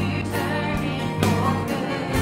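Church worship band playing a slow gospel song: women's voices singing over guitars and sustained bass notes.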